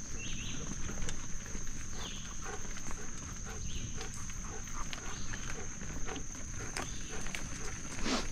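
Bicycle rolling along a dirt forest trail: a steady low rumble of tyres and air on the microphone, with scattered small clicks and rattles from bumps. A continuous high-pitched whine runs over it, with a few short high chirps every second or two.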